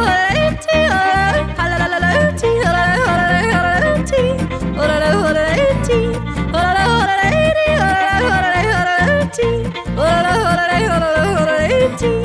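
Cowboy song: a woman's voice yodeling, the pitch leaping up and down, over a steady country band accompaniment.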